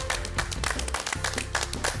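Applause, many hands clapping, over background music with a low bass line.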